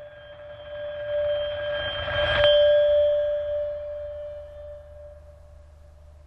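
A steady ringing tone with two fainter, higher overtones sounds throughout. A rushing noise swells under it, peaks about two and a half seconds in, then fades.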